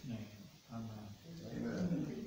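A person's voice speaking indistinctly, in short broken phrases.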